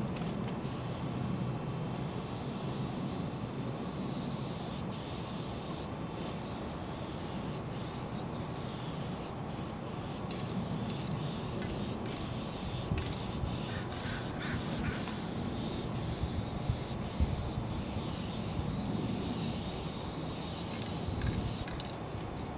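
Aerosol spray-paint can hissing in long bursts with short breaks as paint is sprayed onto the steel side of a freight car. There is a steady low rumble underneath and a few small knocks in the second half.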